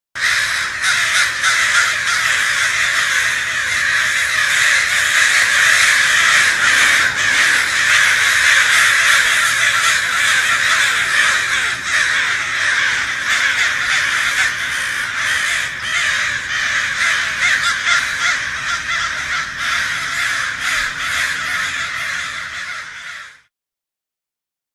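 A large flock of black birds perched in roof trusses, all calling at once in a dense, continuous clamour that cuts off suddenly near the end.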